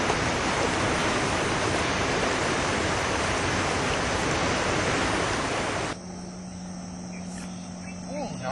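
Loud, steady rush of fast river current running over a rocky bank. About six seconds in it cuts off abruptly to a much quieter background with a faint steady low hum.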